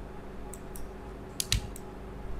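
About five light clicks from a computer mouse and keyboard while pen-tool anchor points are being placed, the loudest about one and a half seconds in, over a faint steady hum.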